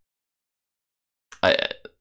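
Silence from a gated microphone for over a second, then a man's voice briefly saying one short drawn-out word, 'I'.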